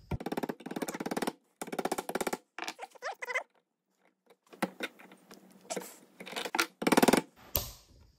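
A small hammer tapping the steel pivot pin through an engine hoist hook's spring latch, driving the pin home, in quick runs of light metallic taps. The taps stop for about a second near the middle, then resume.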